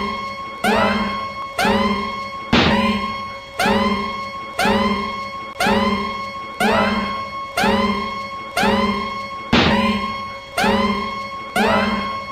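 A one-second snatch of music with a plucked, guitar-like note sliding up in pitch, looped over and over about once a second as a stutter edit.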